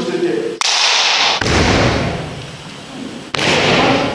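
A bamboo shinai striking a kendo dō (torso protector): one sharp crack about half a second in, followed by loud noisy movement, with another burst of noise near the end.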